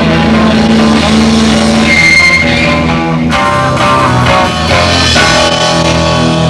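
Live heavy metal band playing loud electric guitars, bass and drum kit; the riff changes about three seconds in.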